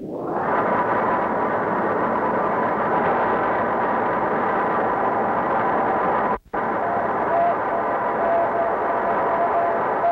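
Moon-bounce Morse code signal heard through a radio receiver: a steady rushing hiss of deep-space noise, with a faint tone keyed on and off in short dashes in the last few seconds. The noise drops out briefly a little past six seconds.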